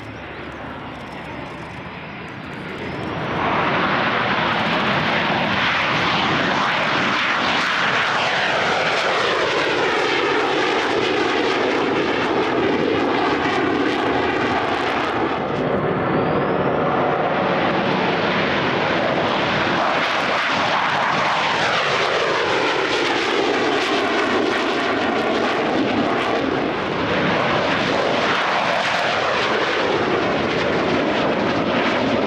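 Two F/A-18 Super Hornets' twin jet engines running at takeoff power as the jets take off one after another. A lower rumble swells into a loud, sustained jet noise about three seconds in, eases briefly about halfway through, then builds again as the second jet goes by.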